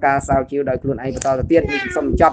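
Speech: a voice talking continuously in Khmer, with no pause.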